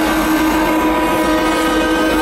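Sustained electronic chord of intro music over a large concert PA, several notes held steady without change, over a haze of crowd noise.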